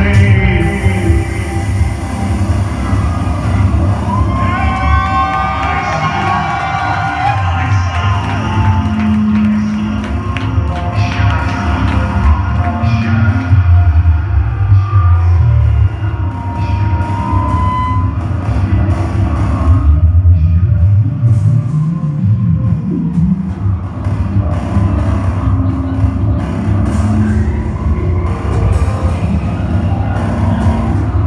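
Live synthpop band playing through a venue PA: a steady, heavy bass beat under synth lines, with a male singer.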